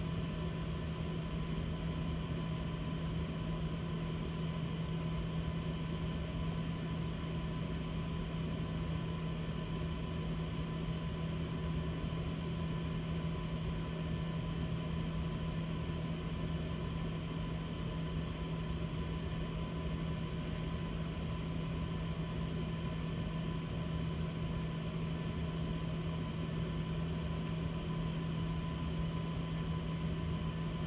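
A Kodak NexPress ZX3900 digital production press running through its fifth-station color-change service routine. It gives a steady, unchanging machine hum with a strong low drone and a thin higher tone above it.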